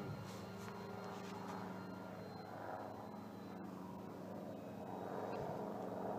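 Electric RC warbird (FMS 1700 mm Corsair) flying overhead: a steady, faint drone of its brushless motor and propeller, growing a little louder near the end.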